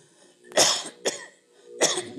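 A man coughing close to the microphone in a pause between sentences: a loud cough about half a second in, a short one just after, and another sharp one near the end.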